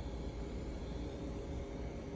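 Steady hum and hiss of machinery or fans running in a workshop room, with no distinct events.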